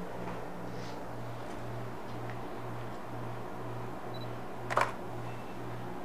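A single camera shutter click about three-quarters of the way in, taking a strobe-lit shot, over a low hum that pulses about twice a second.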